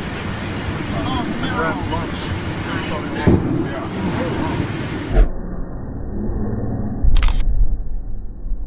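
Indistinct voices chattering over a steady background noise, turning muffled about five seconds in. Near the end comes a loud, sharp crack of a lightning strike, followed by a low thunder rumble.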